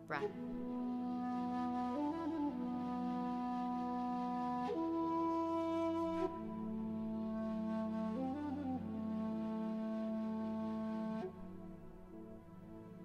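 Slow, calm background music: a flute-like wind instrument holding long notes that change every couple of seconds over a steady low drone, growing quieter near the end.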